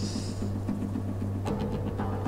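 Quiet TV drama soundtrack: a low steady drone with a faint regular pulse over it, a brief hiss right at the start and a single soft click about one and a half seconds in.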